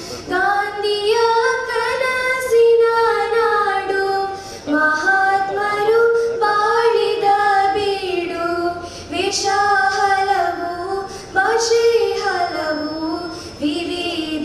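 Girls singing a song together into microphones, amplified over the hall's sound system, in long held phrases with short breaks between them.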